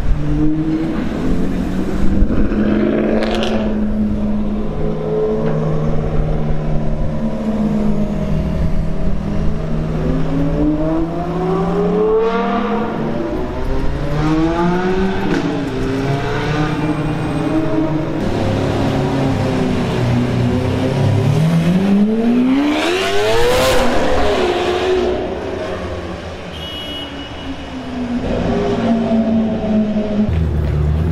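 Car engines running and revving as cars accelerate past one after another. The loudest is a single car accelerating hard past about two-thirds of the way in, its pitch climbing steeply and then falling away.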